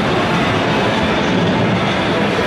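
Loud, steady din of a busy video arcade, the sounds of many game machines blending into one continuous wash.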